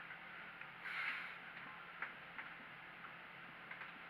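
Quiet room tone with faint handling of a barbell: a soft rustle about a second in and a few faint ticks as the hands shift on the bar.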